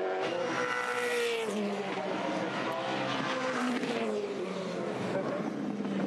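Supercars V8 race car engine running at speed on track. The pitch shifts as the car moves through the corners, with a sharp drop in the engine note about a second and a half in.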